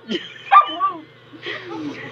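A woman's delighted laughter and squeals, two short high outbursts in the first second followed by quieter laughing.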